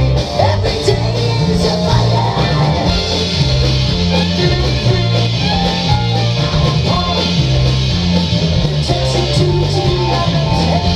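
Alt-country rock band playing the song live: a stepping bass line under drums, guitar and fiddle at a steady full level.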